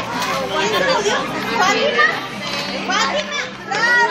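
Many voices of adults and children talking over one another, with high children's voices among them.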